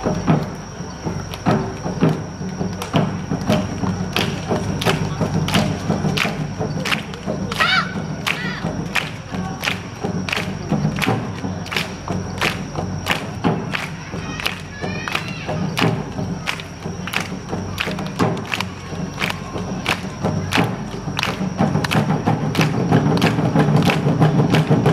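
Awa Odori festival band (narimono) playing its steady march-like rhythm: drum and gong strikes about twice a second, with a few brief high sliding notes along the way, growing louder near the end.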